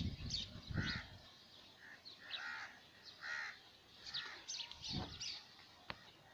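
Crows cawing several times, with higher, thinner chirps of small birds among them. Low rumbles on the microphone near the start and again about five seconds in.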